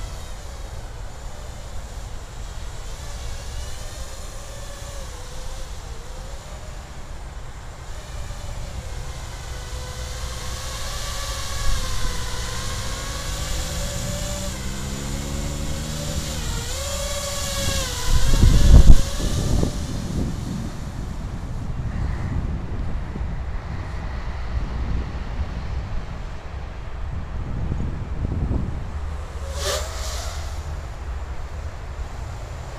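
Eachine Wizard X220S FPV racing quadcopter in flight, its brushless motors and propellers giving a buzzing whine that rises and falls in pitch with the throttle. About two-thirds of the way in a loud low rumble swells briefly as the quad comes close, over a steady low rumble underneath.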